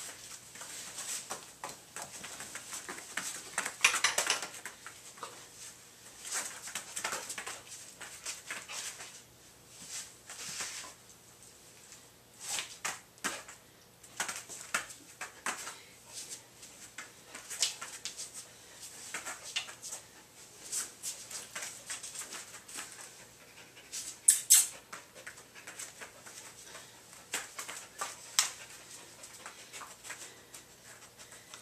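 A dog moving about and sniffing: scattered short scuffs, clicks and sniffs, loudest about four seconds in and again about three-quarters of the way through.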